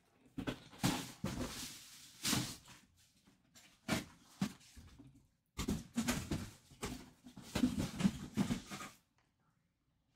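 Irregular handling noises: short rustles, scrapes and light knocks coming in bursts with brief gaps between them.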